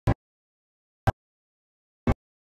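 Recording dropout: the sound is cut to dead silence except for a brief blip of the live rock band's music exactly once a second, twice here.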